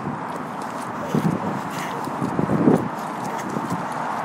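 Two short bursts of a woman's laughter over a steady background hum.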